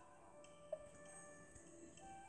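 Faint, soft background music of a children's colouring app, with one sharp click sound effect a little under a second in.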